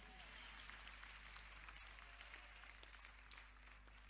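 Near silence: faint, even room noise of a large hall full of people, with a few soft clicks.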